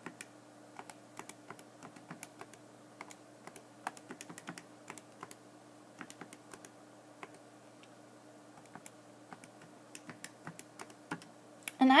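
Calculator keys being pressed one after another: a long run of light, irregular clicks as a multi-step multiplication and division is keyed in.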